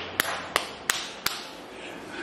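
Four sharp taps about a third of a second apart in the first second and a half, followed by a low background.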